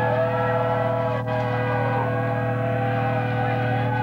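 Electric guitar feedback through a stage amplifier: several sustained tones that slide up and down in slow arcs, over a loud steady amplifier hum, with no drums playing.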